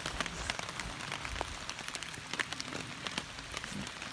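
Rain falling, a steady hiss with many scattered drops ticking on a hammock tarp.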